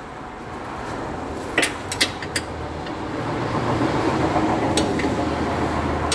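A few sharp metallic clinks of hand tools against the car's underside, over a low background noise that grows louder through the last few seconds.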